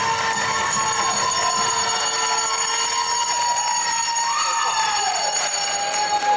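Spectators and young players cheering and shouting after a goal, many high voices rising and falling over one another.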